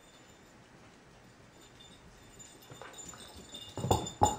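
Quiet room for the first couple of seconds, then soft taps and scuffles that build toward the end, with one sharper knock near the end, as a puppy and a larger dog move about and come up to a man's outstretched hand.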